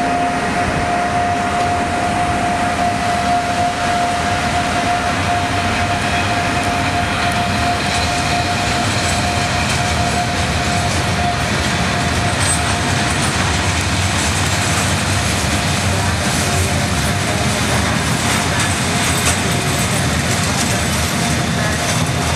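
Freight train of sliding-wall covered wagons and a gas tank wagon rolling past close by: a steady rumble of steel wheels on rail, with a thin steady tone over it for about the first half. Clatter over the rail joints gets brighter in the second half.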